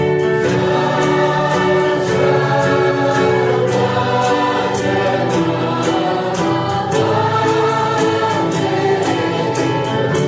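Christian gospel choir music: a choir singing over instrumental accompaniment with a steady beat.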